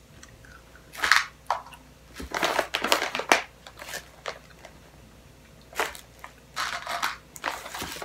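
Irregular crinkling and crunching bursts from a jelly bean bag being rummaged close to the microphone as the next bean is picked out. A cluster of bursts comes about two to four seconds in, and another near the end.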